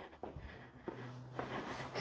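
Faint soft taps and shuffles of sneakers on a rubber gym floor, a few scattered through the moment, as a kickboxer switches stance between alternating front kicks.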